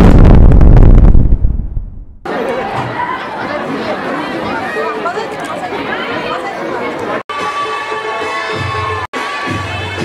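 A loud booming sound effect that dies away over about two seconds. Then a crowd of children and audience shouting, cheering and chattering, with music starting to come through near the end and two brief dropouts in the sound.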